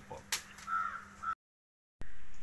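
A short click, then a bird calling once, after which the sound cuts off abruptly to complete silence.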